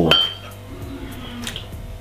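A metal teaspoon clinks against a ceramic mug once at the start, with a brief ringing tone, as chocolate powder is tipped in; a fainter tap follows near the end.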